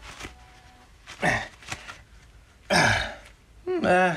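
A man's strained grunts and forced breaths of effort while bending a large steel nail with his gloved hands. There are two loud, short bursts, one about a second in and a longer one near three seconds in, with quieter breathing between.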